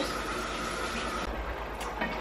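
Steady indoor background noise with a low hum, typical of a fan or running appliance, and a thin high steady tone that stops about two-thirds of the way through.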